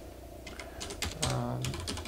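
Typing on a Vortex Race 3 mechanical computer keyboard: a quick run of key clicks starting about half a second in, with more keystrokes near the end.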